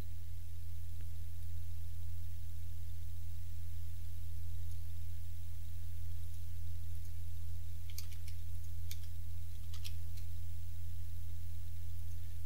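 A steady low electrical hum in the recording, with a few computer-mouse clicks about eight to ten seconds in.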